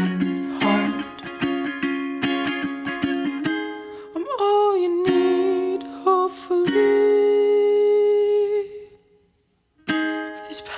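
Ukulele strumming with a wordless sung melody. About four seconds in the strumming gives way to long held humming notes, which break off into a brief silence shortly before the end.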